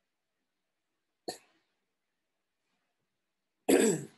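A man coughs once, abruptly, near the end, after a short, fainter throat sound about a second in.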